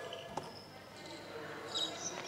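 A basketball bounces once on a wooden court floor about a third of a second in. Faint high chirps follow near the end.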